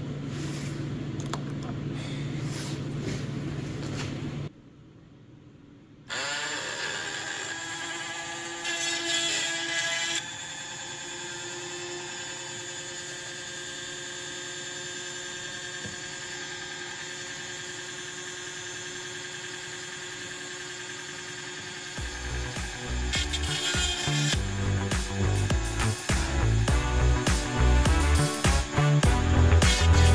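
12-volt electric chainsaw-chain sharpener's grinding motor spinning up about six seconds in and running steadily while it grinds the chain's teeth. Background music with a beat comes in near the end.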